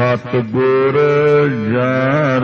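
A voice singing a line of a Gurbani shabad in long held notes that bend up and down, coming in suddenly at the start.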